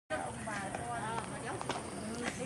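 People's voices talking as they walk, with a few sharp clicks of sandal footsteps on a stone path in the second half.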